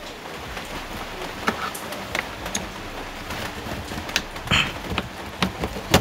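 A plastic car interior trim panel being pulled loose by hand, giving a scatter of short clicks and knocks as it comes free, over a steady hiss.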